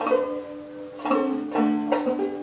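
Four-string tenor banjo playing chords without singing: one stroke at the start, then three more in quick succession in the last second, each left ringing.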